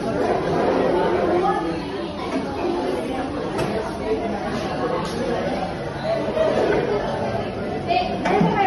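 Background chatter of many people in a busy fast-food restaurant, overlapping voices echoing in a large indoor hall.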